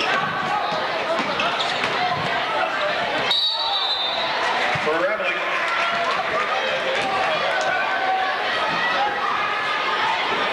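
Gymnasium crowd voices and chatter during a basketball game, with the ball bouncing on the hardwood court. A short, steady high-pitched referee's whistle blast sounds a little over three seconds in.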